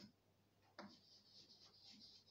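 Chalk writing on a blackboard, faint: a light tap as the chalk meets the board just under a second in, then soft scratching strokes.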